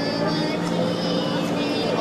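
Indistinct chatter of spectators, with a steady low hum running beneath it.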